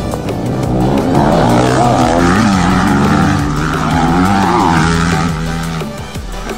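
Dirt bike engines revving, their pitch rising and falling, with music underneath.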